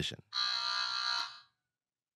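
Game-show buzzer sounding once, a steady electronic buzz of about a second that stops cleanly: a player buzzing in to answer a trivia question.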